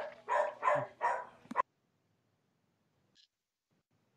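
A dog barking: three short barks in quick succession within the first second and a half.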